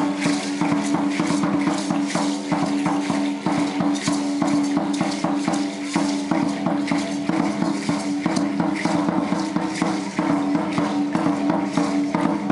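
Dance music for a costumed folk-dance troupe: dense, fast rattling and clacking percussion over a steady held tone.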